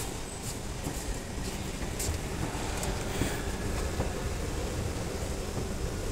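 Hyundai S Series escalator running: a steady mechanical rumble from the moving steps and drive, with a few light clicks.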